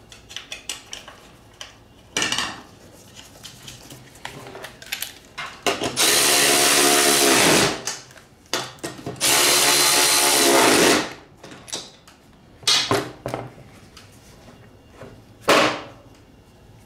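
Milwaukee cordless ratchet tightening nuts on a mower deck spindle cover in two runs of under two seconds each, its motor whine dropping in pitch as each run stops. Short bursts of sound and light metal clinks of nuts and tools come before and after the runs.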